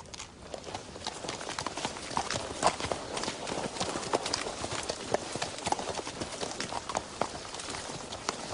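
Horse hooves clopping on the ground at a walk, a dense run of uneven hoof strikes that fades in and grows louder over the first couple of seconds.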